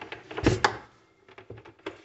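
Knocks and rattling of a countertop coffee maker and its power cord being handled. The loudest burst comes about half a second in, followed by a few light ticks.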